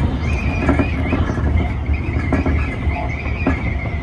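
Tobu 50000-series electric train running, heard from the driver's cab: a high, wavering wheel squeal over the low running rumble, with several clacks of the wheels over rail joints.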